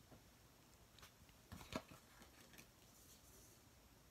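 Near silence with faint handling sounds of paper tarot cards: soft taps and rustles as a card is laid on the table, the loudest a little over one and a half seconds in.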